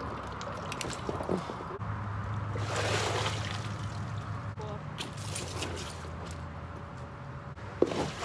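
Pool water sloshing and trickling as a plastic bucket is dipped and lifted in a shallow inflatable pool, with a sharp splash just before the end as the bucket is tipped.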